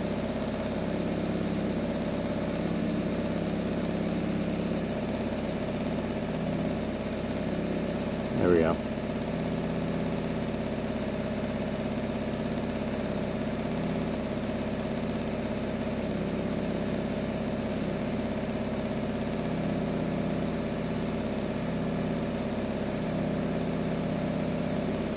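Geo car's engine idling steadily, heard from outside the car. A brief voice-like sound comes about eight and a half seconds in.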